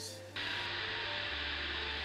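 Steady hiss of coolant spraying onto a part turning in a Haas ST-55 CNC lathe, starting suddenly a moment in, with soft background music underneath.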